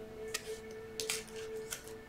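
Soft background music with a steady held tone. Over it come a few light clicks and slides of tarot cards being picked up and laid down on a table.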